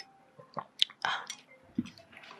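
Close-up eating sounds: chewing with a few sharp clicks, and a low thump near the end as a mug is set down on the table.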